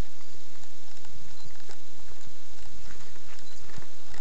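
Footsteps on a dirt forest trail: irregular crunches and knocks of shoes on soil, twigs and litter, over a steady hiss.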